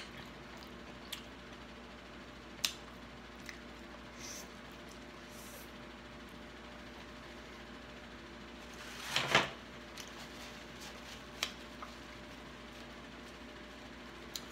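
Quiet eating and handling of a king crab leg: a few soft wet clicks and smacks of chewing, with one louder smack about nine seconds in lasting about half a second.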